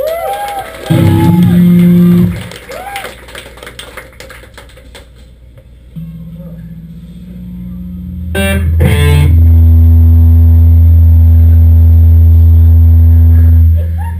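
Electric guitar and bass through the stage amps between songs: a short, loud low note about a second in, some scattered picking, then a strummed chord left ringing, loud and sustained, for the last five seconds.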